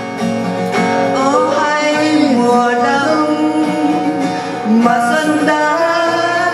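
Acoustic guitar strummed as accompaniment to a voice singing a slow, gliding melody.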